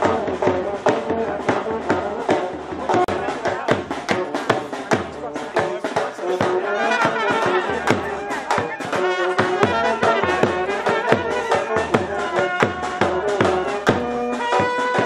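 Brass-band music with a steady drum beat under a wavering melody line.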